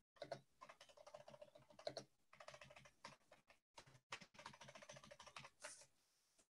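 Faint typing on a computer keyboard: quick runs of key clicks broken by short pauses.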